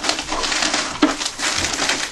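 Crinkling and rustling of a padded Priority Mail envelope as a cardboard Priority Mail box is slid into it.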